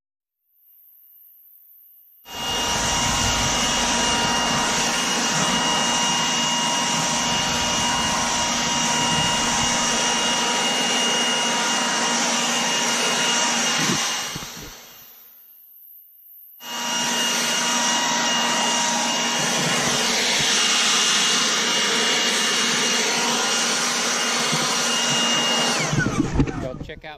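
Milwaukee M18 Fuel battery-powered blower running at full speed: a steady rush of air with a high electric-motor whine. About 14 seconds in it is switched off and winds down, then starts up again about two and a half seconds later.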